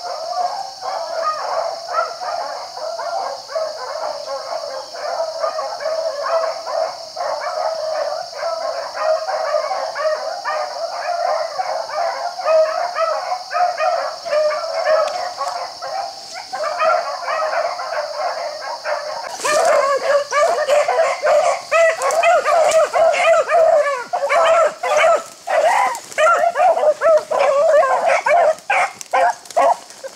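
A pack of beagles baying on a rabbit's scent trail, many hound voices overlapping without a break. About twenty seconds in the baying becomes louder and closer, with choppier individual calls.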